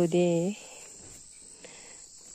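A steady high-pitched drone of insects. A woman's voice is heard briefly at the start.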